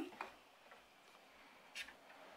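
Near silence with a faint, short click late on: a Panasonic Micro Four Thirds lens being handled onto a camera's lens mount.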